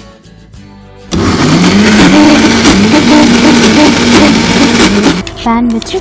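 Electric mixer-grinder (mixie) running, grinding, starting suddenly about a second in and stopping about five seconds in.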